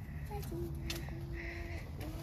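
A voice holding one steady low note for over a second, with a faint click just before it, over a steady low rumble.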